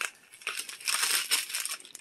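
Paper receipts and a plastic pouch rustling and crinkling as they are handled. The crinkling starts about half a second in and comes on and off.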